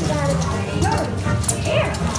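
Dark-ride soundtrack from the ride's speakers: music playing, with short calls that rise and fall in pitch over it.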